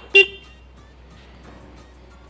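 TVS Ntorq 125 scooter's horn giving one short toot, its button pressed once, just after the start.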